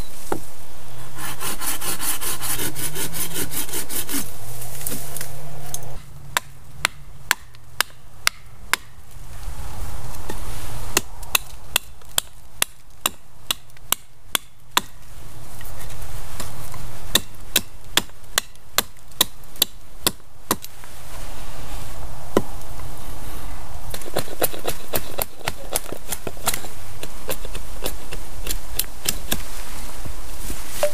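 Small hatchet chopping and shaping a birch stick held against a log: a string of sharp blade strikes into the wood, about one or two a second, with faster runs of quick strokes near the start and near the end.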